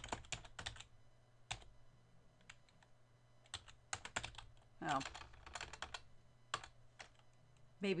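Computer keyboard typing in short bursts of keystrokes with pauses between them.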